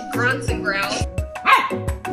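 A small puppy making funny vocal noises in a few wavering calls, the loudest about one and a half seconds in, over background music with a steady beat.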